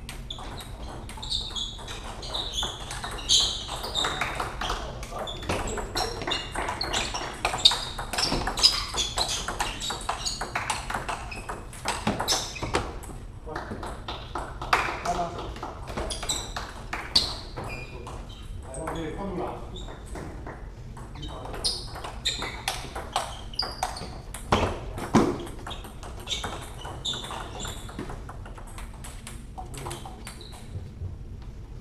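Table tennis ball clicking off bats and table in rallies, the hits coming in quick irregular runs with short pauses between points.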